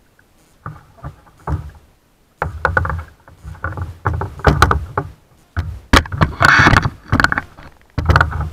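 Irregular knocks, bumps and scraping against a plastic kayak hull, carried strongly through the boat to the bow-mounted camera, starting half a second in and getting louder, with the loudest cluster near the end.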